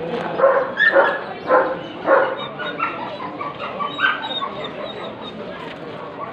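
A dog barking: a quick run of barks in the first two seconds and one more about four seconds in, over the murmur of a crowd.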